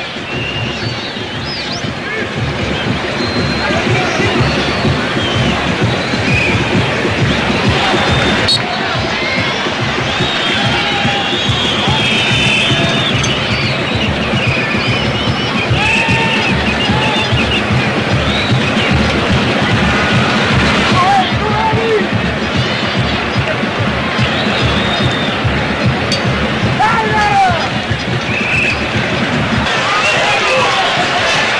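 Football stadium crowd singing and chanting over a steady drumbeat, with many voices and calls rising over a constant roar.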